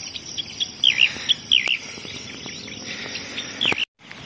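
Songbirds chirping in the early morning, a few short rising-and-falling chirps, over a steady high insect drone of crickets. The sound cuts off suddenly near the end.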